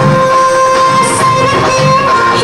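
Loud dance music: a long held note over a steady beat that comes about once a second.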